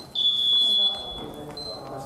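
Electronic buzzer sounding one steady high-pitched beep of a little over a second, then a shorter, fainter tone just after.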